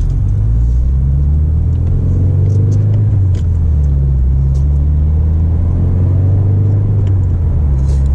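2015 Subaru WRX's turbocharged flat-four engine, running a Stage 1 tune, heard from inside the cabin as the car pulls away gently. The low engine note climbs, dips briefly a little past three seconds in, then climbs again.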